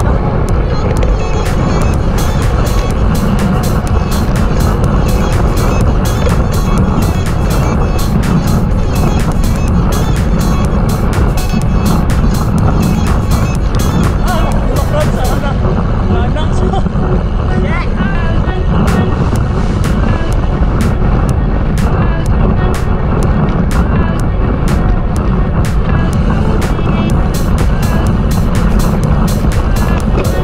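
Wind rushing over a handlebar-mounted camera's microphone as a road bike is ridden at race speed, a steady low rumble, with many short clicks and knocks from the road through the bike.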